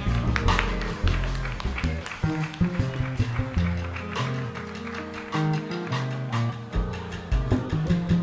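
Live jazz band playing an instrumental passage: a drum kit's drums and cymbals strike throughout over a moving low bass line.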